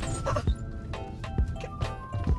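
Background music with a steady beat and held synth tones, with a brief wavering, yelp-like sound just after the start.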